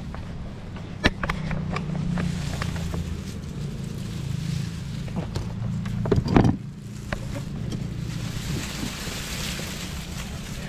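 Onions knocking and rustling in a mesh sack as it is handled and filled, with the loudest knock about six seconds in, over a low steady rumble.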